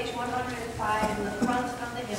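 Speech only: a voice at the altar leading the liturgy.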